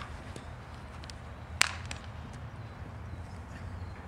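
One sharp crack of a baseball impact about one and a half seconds in, with a few faint ticks around it over a steady low background rumble.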